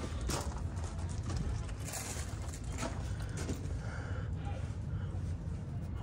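Steady low background rumble with a few faint clicks and knocks.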